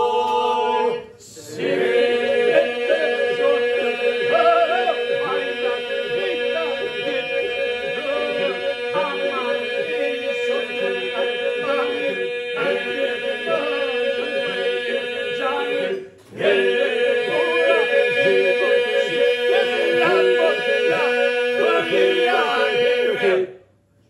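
Albanian Lab iso-polyphonic men's singing (labërishte), unaccompanied: solo voices weave a melody over a steady drone held by the group. The song pauses briefly about a second in and again about 16 s in, then ends shortly before the close.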